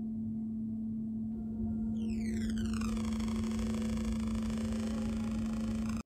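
Synthesized sci-fi portal sound effect: a steady electronic hum, joined about two seconds in by a falling sweep of many tones that settles into a dense, steady synth drone.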